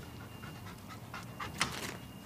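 A dog panting in short quick breaths, louder for a moment near the end, while it begs for food.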